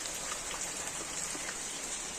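Steady rain falling on a wet paved patio, with scattered drop ticks and a drainpipe splashing into a water-filled plant saucer.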